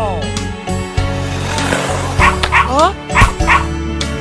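Cartoon sound-effect dog yipping about four times in quick succession in the second half, over bouncy children's instrumental music. A falling sliding tone opens the passage.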